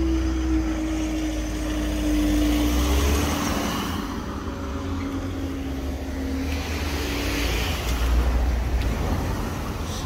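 Road traffic at a railway level crossing as the barriers lift: car engines rumbling and tyres as cars move off over the crossing, under a steady hum that slowly drops in pitch and fades out about seven seconds in.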